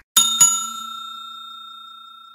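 Subscribe-button animation sound effect: a click right at the start, then two quick bell strikes about a quarter second apart that ring on and fade away slowly.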